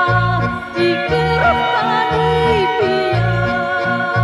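Macedonian folk song: a woman singing an ornamented melody over an accordion-led folk band, with bass notes changing in a steady rhythm underneath.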